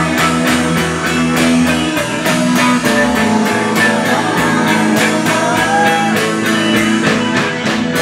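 A rock band playing live: electric guitars over a steady drum-kit beat, with cymbal strikes about four a second.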